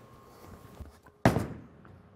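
Ebonite GB4 Hybrid bowling ball landing on the lane as it is released: a single sharp thud a little past a second in, ringing away briefly.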